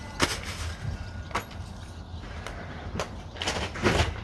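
A few short, light knocks and rustles from someone moving about to fetch a bag of potting soil, over a steady low background rumble.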